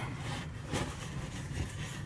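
Faint rustling of a cotton T-shirt being pulled out and unfolded, over a steady low hum.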